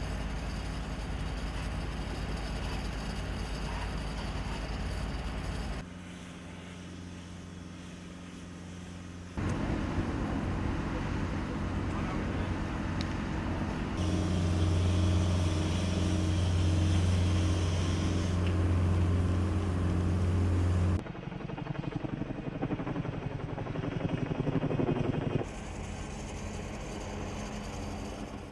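Steady engine hum from bushfire firefighting footage, changing abruptly several times as the shots cut. The loudest stretch, from about halfway to three-quarters through, is a strong steady low hum while a firefighter sprays a hose on burning bush.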